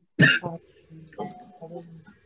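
A single loud cough about a quarter second in, followed by softer voice sounds.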